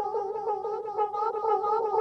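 Hologram Microcosm effects pedal on its Mosaic C setting, playing back layered micro-loops of a voice at double speed. It makes a dense, continuous, quickly warbling pitched texture.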